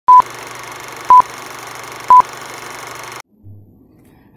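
Film countdown leader sound effect: three short, loud, single-pitch beeps one second apart over a steady projector-style hiss and low hum, all cutting off suddenly about three seconds in.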